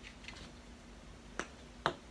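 Two sharp plastic clicks near the end, about half a second apart, from a glue stick being capped.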